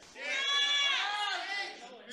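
A person's high-pitched, drawn-out vocal call, one long sound lasting about a second and a half, gently rising and falling in pitch.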